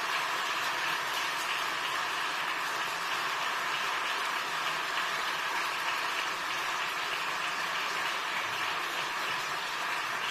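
A large audience applauding steadily: many hands clapping together in a dense, even patter.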